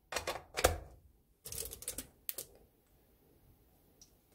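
Hard plastic clattering as a plastic citrus juicer is handled and set down on a glass cooktop: a quick run of sharp taps in the first second, a brief scraping rustle, then two sharp clicks a little after two seconds in.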